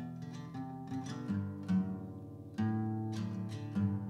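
Ashton six-string acoustic guitar played softly, chords ringing on with a few new notes picked, and a louder chord struck about two and a half seconds in.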